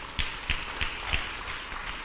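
Congregation clapping: an even patter of applause with distinct claps about three times a second.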